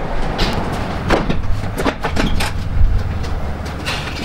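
Irregular metallic clanks and rattles from work with a transmission jack and its chains under a car on a lift, about a dozen in four seconds, over a steady low hum.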